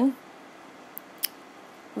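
Two short, sharp clicks about a second in, a quarter second apart, over a low steady hiss in a pause between spoken phrases.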